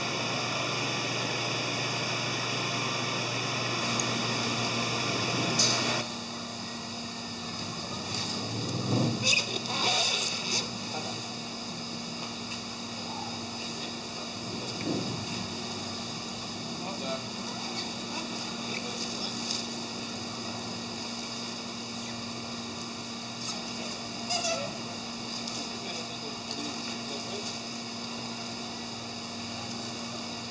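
Steady mechanical hum of fish-farm equipment with several fixed tones. About six seconds in it changes abruptly to a quieter, lower hum, with scattered short handling noises over it, the busiest about nine to ten seconds in.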